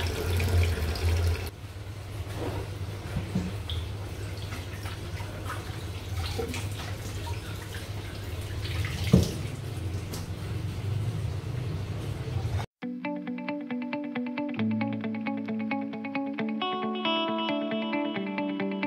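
Kitchen room sound with a low steady hum and light clicks of utensils and vegetables being handled on the counter, with one sharper knock about nine seconds in. Near the end the sound cuts abruptly to background guitar music.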